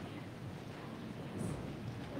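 Low rumbling room noise of people shifting and moving about, with a small click about one and a half seconds in.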